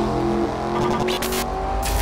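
Race car engine sound effect in a channel logo sting: the engine holds a steady note, with two short hissing bursts, one about a second in and one near the end.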